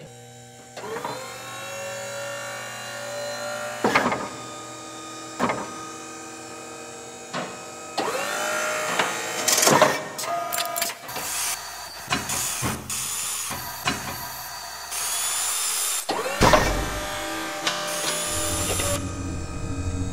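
Designed effects for powered armour assembling around a body: servo motors whirring with short rising whines, sharp metal clanks as plates and latches lock on, and a burst of air hiss about fifteen seconds in, over a low steady hum. A deep rumble comes in near the end.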